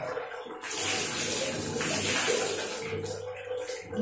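Water poured from a plastic dipper splashing over a face and head, a steady splashing that starts about half a second in and runs for about three seconds.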